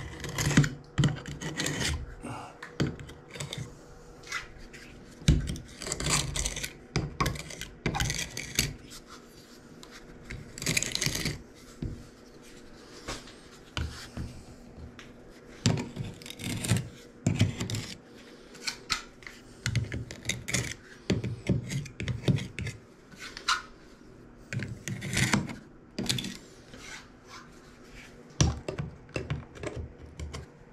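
Hand work on a glass tile wall: a utility knife blade scraping along the joints between glass tiles, with irregular clicks and taps of the tools against the tile and short bursts of scraping.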